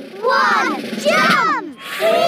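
High-pitched cartoon children's voices shouting together in two short bursts as they jump, then a sudden rush of noise near the end: the start of a big splash into a muddy puddle.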